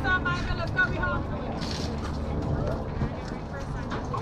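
Players and spectators calling out at a youth baseball game, words not clear, with one high raised voice calling in the first second, over a steady low rumble.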